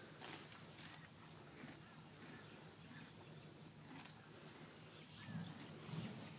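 A pony grazing, tearing and chewing grass in short irregular rips, over a steady high insect buzz.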